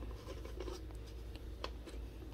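Plastic hummingbird feeder lid and reservoir being handled and fitted together: soft rubbing with a couple of small clicks near the end, over a steady low hum.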